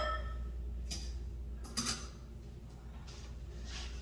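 A couple of light clicks of metal bar tools being handled, about one second in and a sharper one a little later, as cocktail strainers are picked up after shaking. A low steady hum runs underneath.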